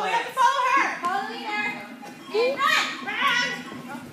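Several children shouting and calling out at once while they play, with high-pitched rising and falling cries.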